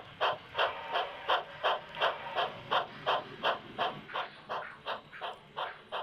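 Steam locomotive chuffing at a steady pace, about three exhaust beats a second, each a short puff of hissing steam.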